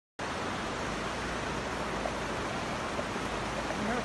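Steady, even rushing noise with no distinct events, of the kind that running water, rain or wind on the microphone makes; faint voices start near the end.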